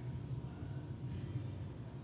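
Steady low hum of room tone with no distinct event.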